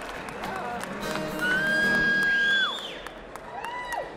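A long held high note, steady for about a second before bending down, followed near the end by a short rising-and-falling note, over scattered claps and crowd noise.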